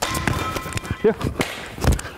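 Scuffling feet on a wooden sports-hall floor, then a heavy, deep thud near the end as a man is thrown down onto the floor in a takedown.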